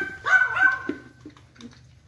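Pembroke Welsh corgi giving about three short, high-pitched whines in quick succession in the first second, the last one held briefly before it fades. He is begging for food held out to him.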